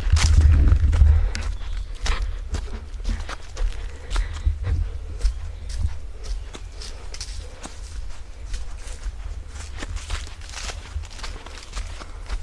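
Footsteps crunching on a dirt forest path strewn with dry leaves, irregular steps with a low rumble on the microphone, loudest in the first second.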